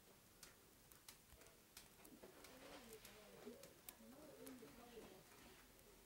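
Near silence: room tone with a few light clicks, then faint, low, wavering calls from about two seconds in that die away near the end.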